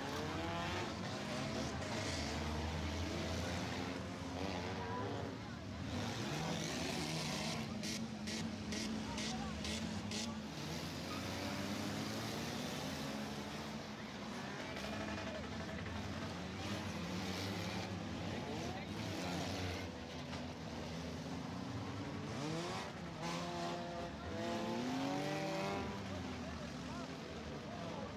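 Many demolition-derby cars' engines revving together, pitches rising and falling over one another as the cars push and ram. There is a run of sharp knocks of metal impacts about eight to ten seconds in.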